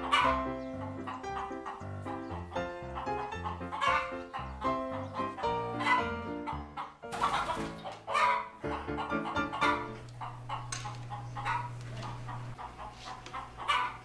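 Instrumental music with steady notes over a bass line, and a chicken clucking over it in short calls every couple of seconds.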